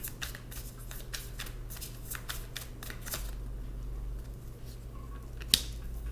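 Tarot deck shuffled by hand, a quick run of card clicks for about three seconds that then thins out. Near the end comes one louder, sharp snap as a card is dealt onto the spread on the wooden table.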